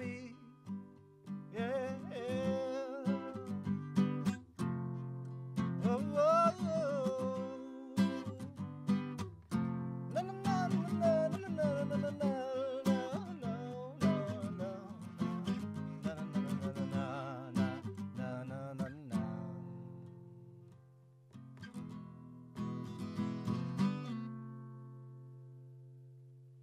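Strummed acoustic guitar under a man singing long, wavering notes. After a short lull near the end, a few last strums come and the final chord is left ringing and fading out.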